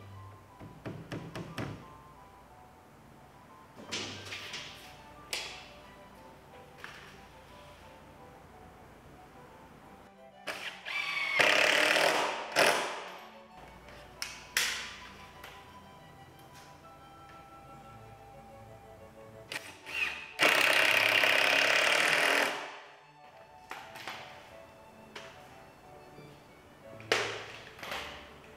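Power drill driving screws into timber: two runs of about two seconds each, one about eleven seconds in and one about twenty seconds in, the second steady and then stopping sharply. Shorter knocks and clatters of wood and tools come between them, over background music.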